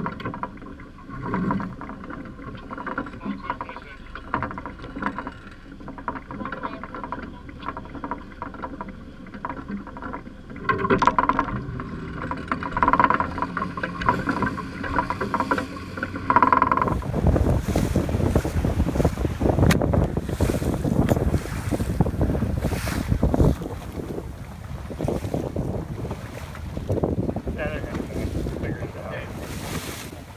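Motorboat engine running steadily with water washing past the hull. A little past halfway the sound cuts to wind buffeting the microphone over rushing water, louder and rougher, to the end.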